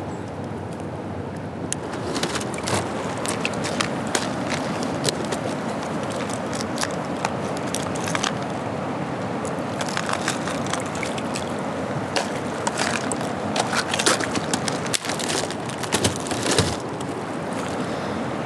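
Steady rush of river current, with many scattered sharp plastic clicks and rattles as a clear plastic tackle box of jig heads is opened and picked through and a plastic lure pack is handled.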